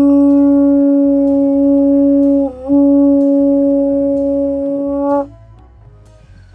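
Conch shell blown in one long, steady, horn-like note. It breaks briefly about two and a half seconds in, sounds again, and stops just after five seconds.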